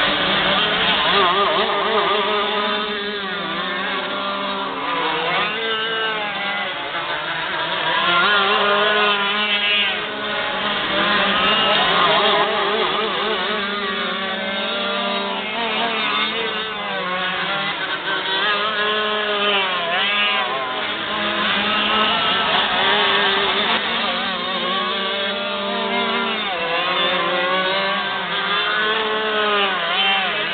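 Two-stroke 125cc shifter cage kart engines racing on the track, their pitch climbing on the straights and dropping off into the corners every few seconds as they lap.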